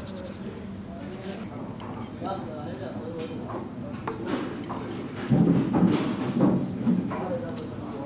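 Indistinct background talking of several voices in a busy room, with one voice louder for a second or two about five seconds in.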